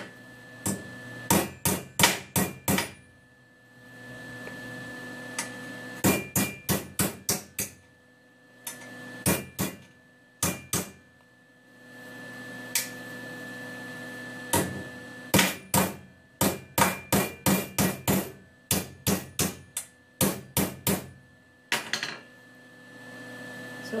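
Small hammer striking the cut-off handle of a silverware spoon, bending it into a small S shape because the handle is too thick to bend by hand. The strikes are sharp and metallic and come in quick runs of five to ten, with short pauses between runs.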